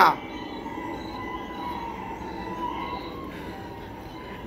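Steady, fairly quiet background noise with a faint held tone running through it, in a pause between lines.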